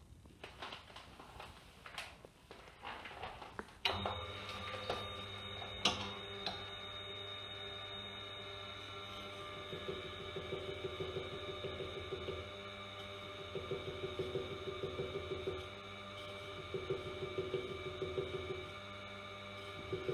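A Tormek sharpening machine switched on about four seconds in, its motor running with a steady hum. A serrated knife is then honed against its spinning felt wheel, adding a faint rubbing that comes and goes.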